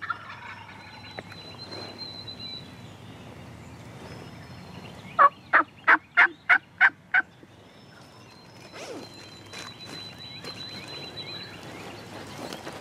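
A wild turkey gobbler gobbles once, about five seconds in: a rapid rattling call of about seven pulses lasting some two seconds.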